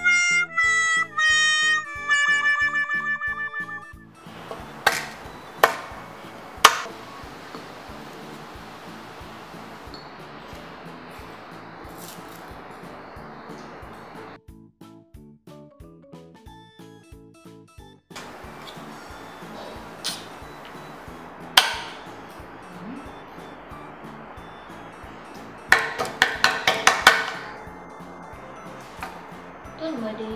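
Background music with a steady beat. It opens with a quick run of falling pitched notes, like a comic sound effect, and drops away briefly in the middle. A few sharp clicks stand out, with a burst of them near the end.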